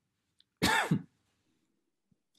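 A person clears their throat once, a short sound of about half a second with a downward slide in pitch, over a video-call line.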